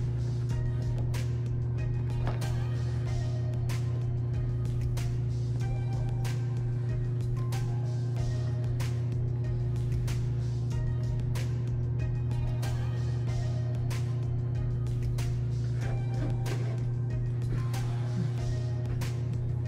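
Background music with a steady beat over a constant low hum.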